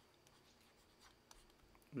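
Faint scratches and light ticks of a stylus writing on a pen tablet, over near-silent room tone.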